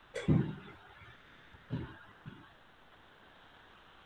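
A man coughing: one loud cough just after the start, a second cough about a second and a half later, and a faint short one after it.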